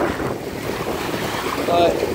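Small waves washing and splashing over the rocks at a lake's edge, with wind buffeting the microphone.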